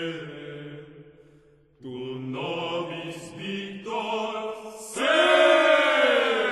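Medieval Latin chant sung by a vocal ensemble. A sung phrase dies away almost to nothing, the voices come back in about two seconds in, and they swell louder about five seconds in.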